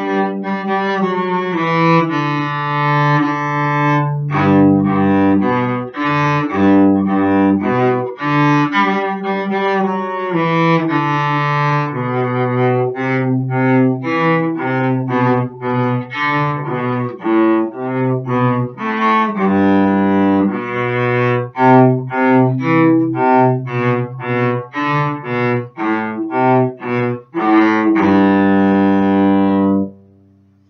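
Solo cello played with the bow: a melody of sustained notes moving step by step through the instrument's low and middle range. It closes on a long held note near the end that cuts off sharply.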